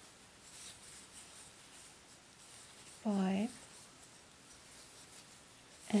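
Faint rustling and scratching of a crochet hook drawing worsted-weight yarn through loops as treble stitches are worked. A single spoken count word comes about halfway through and is the loudest sound.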